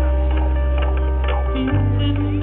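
Live band music over a stadium PA, heard from within the crowd: a held low bass note that shifts to a new chord near the end, with short ticking hits on top.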